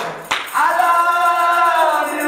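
Worship singing: a sung phrase breaks off briefly with a click, then one long held note is sung.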